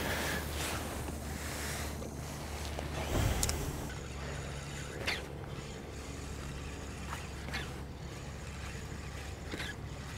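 Spinning reel being cranked to bring in a hooked striped bass, under a steady low rumble, with a few short squeaks spaced a couple of seconds apart.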